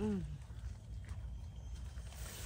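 A spoken word trails off at the start. Then there are faint rustles and soft scrapes in dry leaf litter as a knife works the soil, over a low steady rumble.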